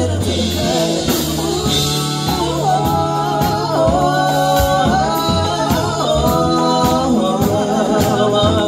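Live afro-fusion reggae and jazz band playing: sung vocals over a steady drum beat, bass and keyboard.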